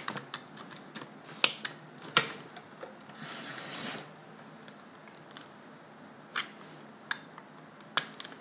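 Utility knife blade scoring thin vacuum-formed plastic: scattered sharp clicks and ticks, with one longer scraping drag of the blade about three seconds in.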